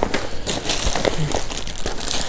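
Clear plastic wrap crinkling and rustling as it is handled and pulled out of a fabric case, with small irregular crackles.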